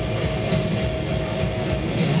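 Loud live industrial metal: heavily distorted electric guitar and bass over a slow, pounding drum machine beat, with one held high note ringing over the low rumble until near the end.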